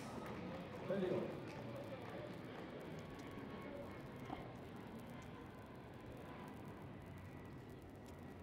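Faint court ambience during a padel rally, with one sharp click of a padel racket striking the ball about four seconds in.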